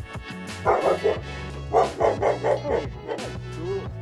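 Background music, with a dog barking in two quick runs of short barks, one about a second in and a longer one in the middle.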